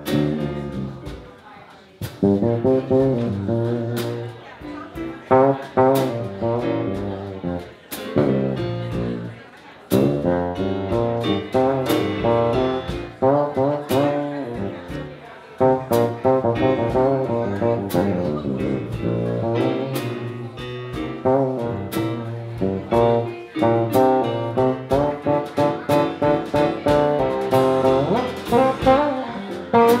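A live band playing an instrumental break: guitar and keyboard lines over bass and drums, with regular drum and cymbal hits.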